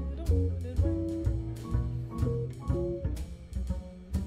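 Live jazz band playing, with upright bass and drum kit under sustained pitched notes from the guitar and piano.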